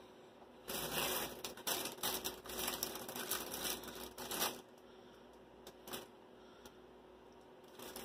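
Plastic food packaging rustling and crinkling as a bag of bread rolls is handled, in irregular bursts for about four seconds, with one more brief rustle a little later.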